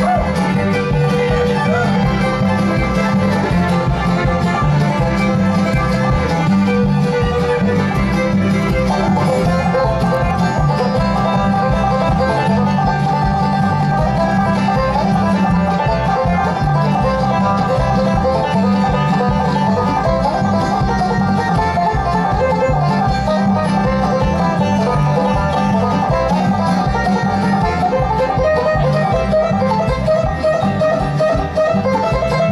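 Bluegrass band playing an instrumental dance tune live: fiddle and five-string banjo carry the melody over strummed acoustic guitar, with a steady low pulse underneath.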